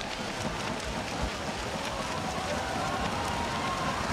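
Steady noise of poolside spectators cheering during a freestyle race, mixed with the splashing of swimmers.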